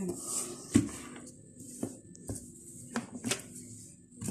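A handful of short clicks and knocks as plastic parts of an electric blender are handled, the loudest about three quarters of a second in.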